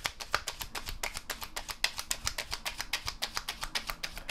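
A tarot deck being shuffled in the hands: a rapid, even run of soft card clicks and slaps, about ten a second.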